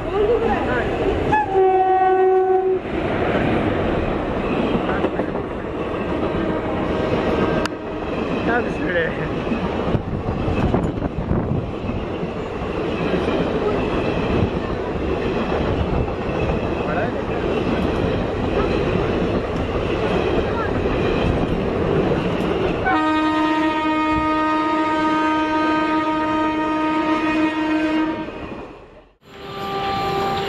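Indian Railways electric locomotive sounding its horn in a short blast about two seconds in, then the train running through the station at speed with loud wheel rumble and clatter of passing coaches. A second, longer steady horn blast sounds near the end before a sudden cut.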